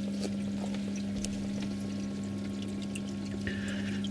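Reverse-osmosis top-off water pouring into a reef aquarium sump through an automatic top-off's open solenoid valve, a steady splashing flow over a constant low hum.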